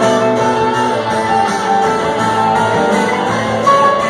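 A live band playing an instrumental jam passage: electric guitar over bass and drums, with no singing.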